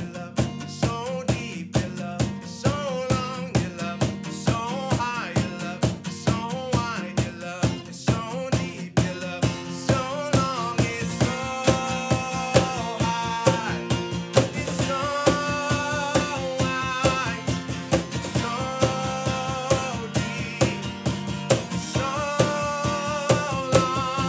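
A man singing a lively children's song to a strummed acoustic guitar, with a steady percussion beat underneath.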